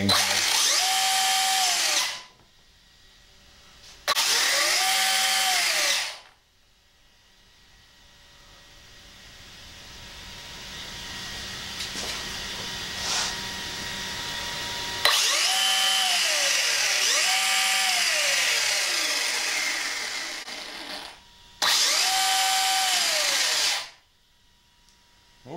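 ARRMA Typhon 6S BLX buggy's brushless motor and four-wheel-drive drivetrain revving with the wheels spinning freely off the ground. Its whine rises and falls in pitch through repeated bursts of throttle: two short ones, then a slow, gradually building spin-up, then two more bursts near the end.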